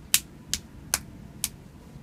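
Four sharp clicks about every half second as hands grip and work the toes of an oiled foot during a foot massage.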